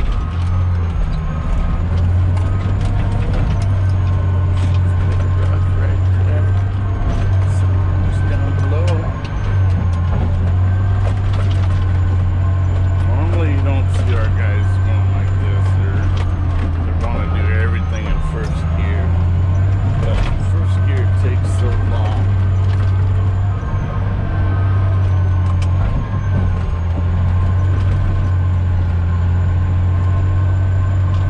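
Caterpillar D10T bulldozer heard from inside its cab, its big diesel engine droning steadily under load in second gear while pushing loose material, with a high steady whine over it and occasional clanks.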